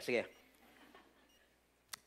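A man says a short "eh" into a microphone, then there is a quiet pause with faint room tone. A single sharp click comes near the end.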